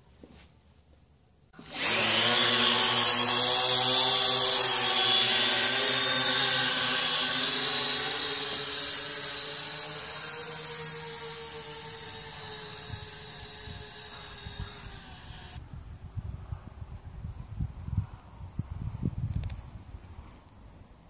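Syma X8W quadcopter's motors and propellers whining. The whine starts suddenly about two seconds in, fades slowly as the drone flies off, and stops abruptly a few seconds before the end. Wind rumbles on the microphone over the last few seconds.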